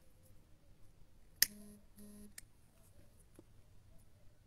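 Quiet room tone, broken about one and a half seconds in by a sharp click, then two short low beeps in quick succession and a fainter click.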